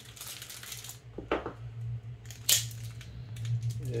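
Small plastic and metal accessory parts, a threaded iris and its cap, handled by hand: a few light clicks and taps with soft rustling, over a steady low hum.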